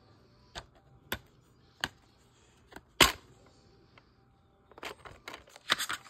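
Plastic DVD case being handled and opened: single sharp clicks spaced about half a second apart, the loudest about halfway through, then a quick run of clicks and rustling near the end from the open case and its paper insert.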